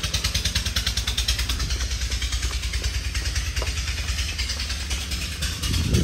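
Wind buffeting the phone's microphone: a steady low rumble with a hiss over it.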